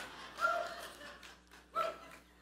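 Congregation laughing at a joke, the laughter thinning out, with two short high-pitched voiced sounds, about half a second in and near the end.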